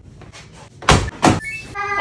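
Two thumps about half a second apart, a front-loading washing machine's door being shut.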